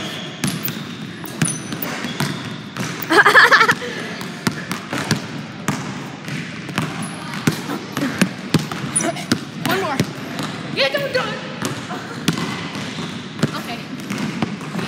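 A basketball bouncing on a hardwood gym floor in sharp, repeated strikes, with voices in the gym and a loud shout about three seconds in.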